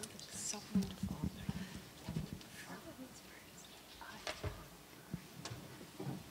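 Quiet murmur of voices in a lecture room, with scattered irregular knocks and clicks, loudest a little under a second in and again around four seconds in.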